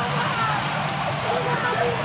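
Stadium crowd cheering and shouting in a steady din of many voices: supporters celebrating a home goal.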